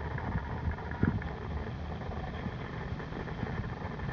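Muffled low rumble of water moving around a hand-held camera submerged in a pond, with small handling bumps and one louder knock about a second in.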